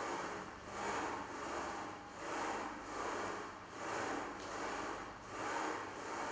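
Rhythmic rubbing, whooshing noise, about eight even strokes, one every three-quarters of a second.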